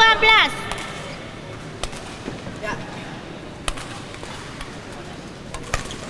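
Sharp strikes of badminton rackets on a shuttlecock during a rally: single hits about two seconds apart, over a steady background hall noise. A voice calls out briefly at the very start.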